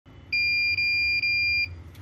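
TP-Link VIGI NVR's alarm buzzer sounding a steady high-pitched beep, three long beeps run almost together. It is the recorder's HDD error alarm for no hard drive being installed.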